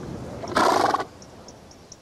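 A horse snorting: a single short, loud, breathy blow lasting about half a second.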